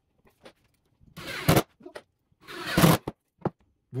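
Two short rasping scrapes of wood against wood, about a second apart, as a glued block is pressed and worked into place on a lumber frame, with a few light clicks between them.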